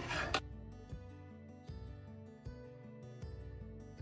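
A metal spoon scraping and stirring in a saucepan, which cuts off about half a second in. Soft background music with plucked notes follows.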